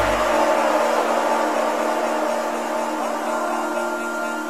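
Melodic techno in a breakdown: the kick drum and bass drop out at the start, leaving held synth tones over a rushing noise wash that slowly fades. A higher held note comes in about three seconds in.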